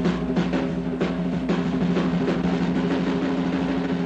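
Swing big band holding one long low chord while the drummer plays rapid strokes on the drum kit underneath.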